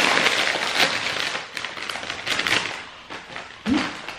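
Potato chip bag being pulled open and crinkled in the hands: a dense crackling that is loudest at first and fades out over about three seconds.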